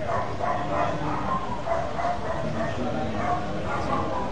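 A small dog barking and yipping repeatedly over people's conversation.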